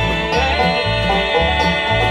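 Live bluegrass band playing: banjo picking over acoustic guitar and upright bass, with a long held note through the first half and the bass pulsing about twice a second.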